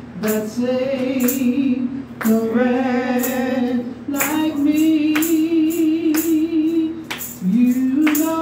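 A woman singing a gospel praise song into a microphone, in phrases of long held notes with vibrato and short breaks between them.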